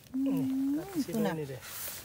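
Speech: a voice saying a few words in Thai, the first syllable long and held.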